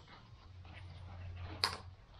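Quiet rustling of a pouch's nylon webbing strap being pushed through the webbing of a backpack hip belt, with one brief sharper rustle about one and a half seconds in, over a low steady background hum.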